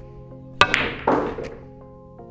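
Pool cue tip striking the cue ball with a sharp click just over half a second in, followed by the clack of the cue ball hitting the object ball and a short spell of rolling and pocket noise, over quiet background music.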